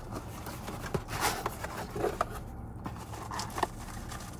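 Cardboard box being opened by hand: flaps and packaging scraping and rustling, with a few short sharp crackles and knocks.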